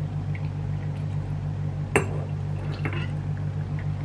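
A steady low hum, with a single sharp metallic clink of a steel ladle against a stainless steel pot about two seconds in, followed by a few faint small knocks.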